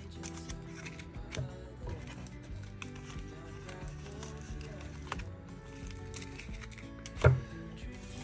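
Soft background music with held notes, over light rustles and clicks of waterslide decal sheets being shuffled and sorted by hand. One sharp, louder knock sounds near the end.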